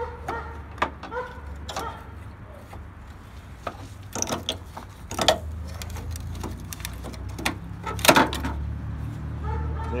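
Knocking, clicking and scraping of a cut-out headlight mount piece being worked loose and pulled from a pickup's front end, in scattered sharp knocks that are loudest about eight seconds in, over a steady low hum.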